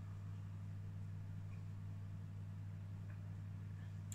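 A steady low electrical hum in a quiet room, with two faint small sounds, one about a second and a half in and one about three seconds in.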